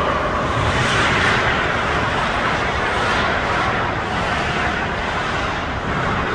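Steady background noise of an indoor ice rink during a hockey game: an even hiss and low rumble with no distinct puck or stick hits.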